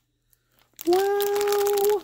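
A woman's long, drawn-out "wow" on one steady pitch, starting about a second in, with the light crinkle of a clear plastic bag of ribbons being handled beneath it; the first part is near silent.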